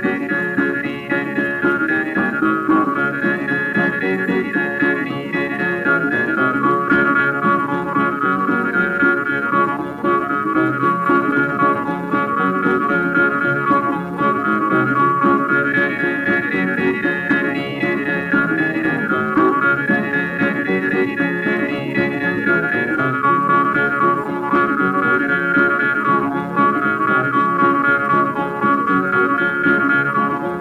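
Instrumental break of a 1929 old-time string-band recording: strummed guitars keep a steady rhythm under a sustained lead melody, with no singing.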